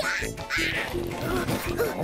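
Cartoon soundtrack: background music with a character's short wordless vocal sounds, several brief up-and-down pitch swoops in the second half.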